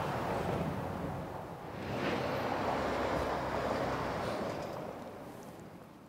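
Outdoor background noise: a steady rush that swells about two seconds in, then fades out toward the end.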